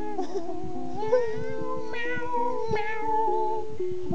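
A ukulele playing a plucked tune, with a voice singing along in long, wavering, sliding meows like a cat.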